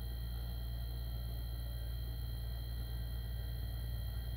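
Steady low electrical hum with a few faint, constant high-pitched tones over it, unchanging throughout.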